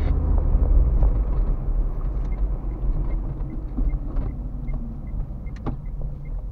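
Car engine and road rumble heard from inside the cabin, easing off as the car slows for a turn. From about two seconds in, a turn-signal indicator ticks steadily at about two and a half ticks a second, with one sharper click near the end.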